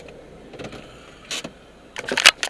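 Steady low hum of a car heard from inside the cabin, with two brief knocks: a faint one about half a second in and a louder one just past a second in.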